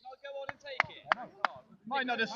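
Four sharp, loud smacks in quick succession, about a third of a second apart, with men's voices faintly behind them.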